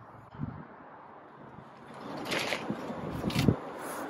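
Warming Trends CrossFire brass gas burner being lit. About two seconds in, a steady rush of burning gas comes up, with a couple of short sharp sounds over it.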